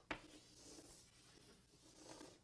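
Faint handwriting sounds: a light tap just after the start, then soft scratching of writing over about a second and a half.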